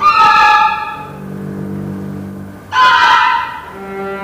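Solo cello with a chamber orchestra playing live: two loud, sudden accented chords, one at the start lasting about a second and another near three seconds in, with low held notes sounding between them.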